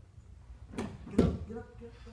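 Two sudden thumps of grapplers' bodies hitting a foam training mat during a roll, the second one heavier and louder.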